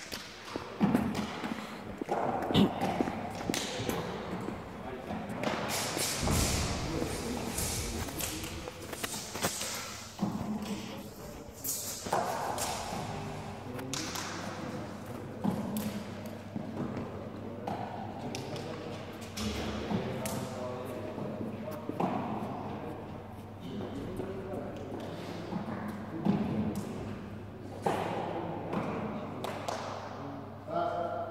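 Indistinct voices in a large gym hall, with scattered thuds from movement on the floor.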